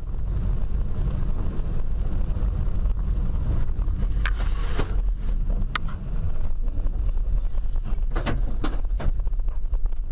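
Steady low rumble of a vehicle driving, as picked up by a dashcam inside the cab. A few sharp clicks or knocks come about four and six seconds in, and a small cluster follows around eight to nine seconds.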